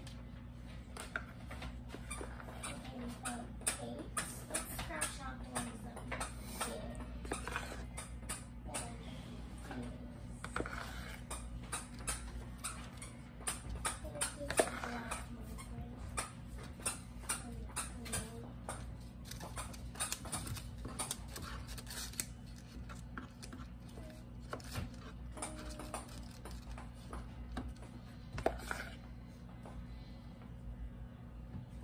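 Spoon clicking and scraping against a plastic mixing bowl as cake batter is stirred, many small clicks throughout, over faint voices and a steady low hum.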